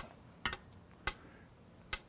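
Faint background broken by a few brief, scattered clicks, about half a second apart to begin with.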